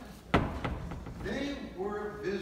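A single sharp knock or thump about a third of a second in, followed by someone talking.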